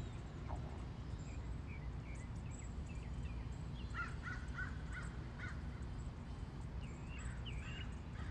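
Wild birds calling in a front-yard field recording. Scattered high chirps are heard, with a quick run of about six repeated notes, roughly four a second, starting about halfway through, all over a steady low background rumble.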